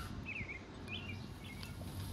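Small birds chirping a few short notes over a steady low outdoor background rumble.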